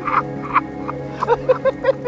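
Several people laughing together in quick repeated bursts, with a music bed underneath.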